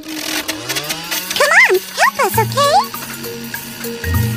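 Cartoon soundtrack music with a rising tone and several swooping, wavering pitched glides in the middle, over a steady low note.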